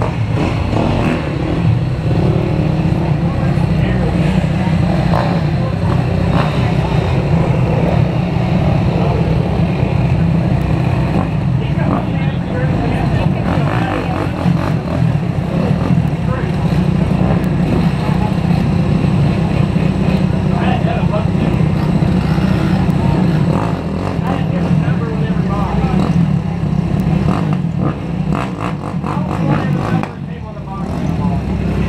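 Many dirt bike engines running together as a pack, a loud, steady drone with no single engine standing out.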